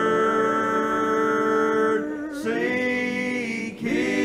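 Men's gospel vocal group singing in close harmony, holding one long chord and then a second one that begins just after two seconds in.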